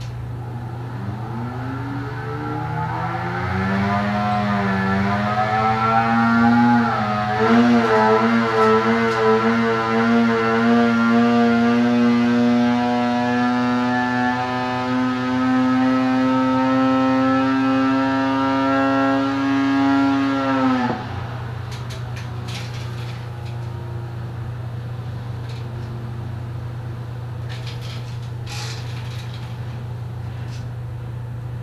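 Arctic Cat CTEC 800 two-stroke twin on a dyno making a full-throttle pull. The revs climb from idle over the first few seconds, waver, then hold high and creep slowly upward under the dyno's load. The engine cuts off sharply about 21 seconds in, leaving a steady low hum.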